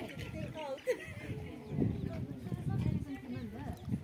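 Several people talking indistinctly at once, background chatter with no clear words.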